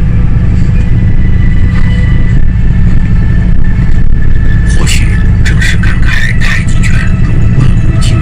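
Steady, loud low rumble of a moving vehicle heard from inside, with indistinct voices talking about five seconds in.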